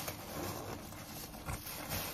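Plastic carrier bag rustling and crinkling as it is pushed into a fabric backpack, with the backpack's fabric shuffling, and a short soft bump about one and a half seconds in.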